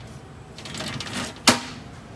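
Hand work on metal parts under a race car: a run of small clicks and rattles, ending in one sharp, loud click about one and a half seconds in.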